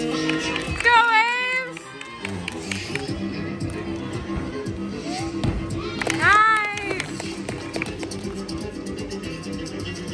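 Floor-exercise music with guitar playing throughout, with two short voice cries that rise and fall in pitch, about a second in and again about six seconds in.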